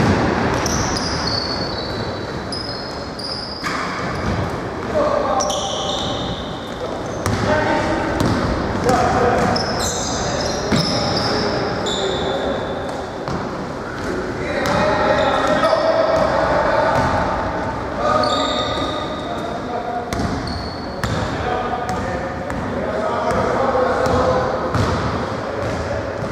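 Indoor basketball game: the ball bouncing on the wooden court in repeated sharp knocks, sneakers squeaking in short high squeals, and indistinct voices from players, all echoing in the hall.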